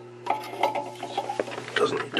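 Light, irregular clicks and rubbing of a hand-made styrene plastic yoke cover being handled and fitted over the glass neck of a picture tube, with a few short small pings.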